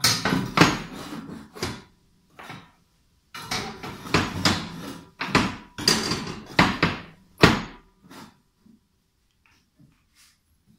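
Steel clamps and square steel tubing knocking and clanking against a steel welding table as the clamps are set on the gate pickets: a quick run of metal knocks in the first two seconds, then a longer run from about three and a half to eight seconds in.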